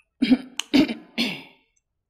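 A woman clearing her throat with three short coughs in quick succession.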